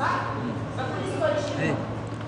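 A person's voice speaking, over a steady low electrical hum.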